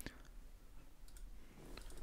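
A few faint computer mouse clicks, a sharp one at the start and a softer one near the end.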